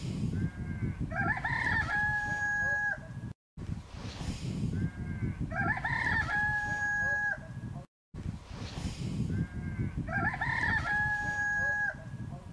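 A rooster crowing three times at even intervals, each crow the same: a few short notes, then a long held note. A steady low rumble runs underneath, broken by short dropouts between the crows.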